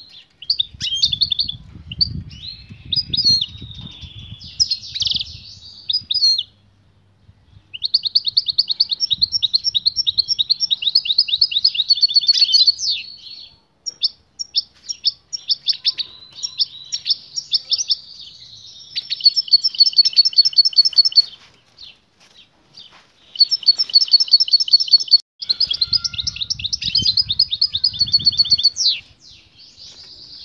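European goldfinch singing: long phrases of rapid, liquid twittering trills, broken twice by brief pauses. Low rumbling sounds come in near the start and again near the end.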